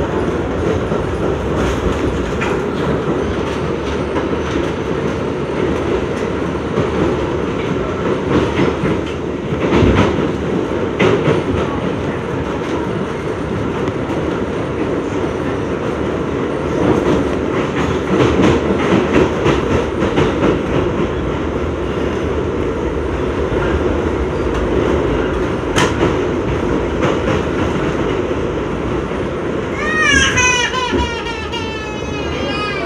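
R62A subway car running through a tunnel at speed, heard from inside the car: a steady rumble of wheels and running gear, with wheels clicking over rail joints and a few louder knocks.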